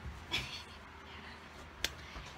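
Room quiet with a soft rustle about a third of a second in, then a single sharp click, like a finger snap, near the end.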